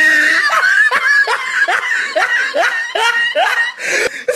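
A person laughing hard in a long run of short, repeated 'ha' pulses, about three a second.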